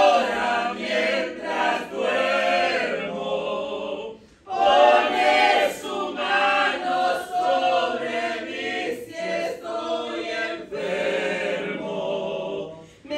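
A woman and a man singing a hymn together without accompaniment, with a short break for breath about four seconds in.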